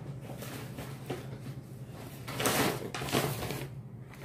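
Handling noise: rustling and soft knocks as things are moved and rummaged through, loudest in two bursts about two and a half and three seconds in, over a steady low hum.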